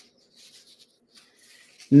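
A pause in a woman's reading aloud: near silence with a few faint, brief soft noises, then her voice starts again just before the end.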